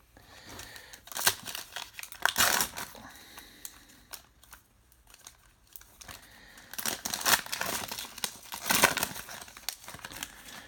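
Trading-card pack wrapper crinkling and tearing as the pack is opened by hand, in two bursts: one from about one to three seconds in, and a longer one near the end as the cards are pulled out.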